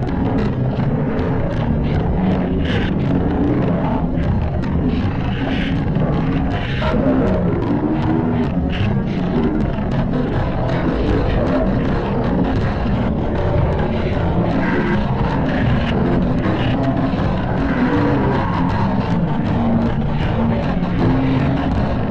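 Loud, heavily distorted music playing without a break: a song run through stacked audio effects that warp its pitch and tone.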